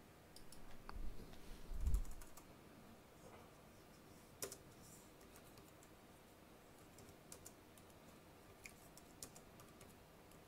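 Faint, scattered keystrokes on a computer keyboard as a short text message is typed, with a few low thumps about a second and two seconds in.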